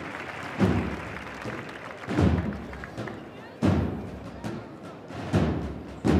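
Slow, heavy bass-drum beats of a Holy Week procession band, one about every second and a half, each ringing out, over a steady murmur of a large crowd.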